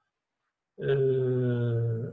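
A man's drawn-out hesitation sound "eee", held on one level pitch for over a second, starting about a second in after a moment of silence.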